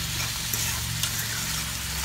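Saltfish with onions, bell peppers and tomatoes sizzling steadily as it sautés in a stainless-steel pan, over a steady low hum. A couple of light clicks of a fork stirring the pan.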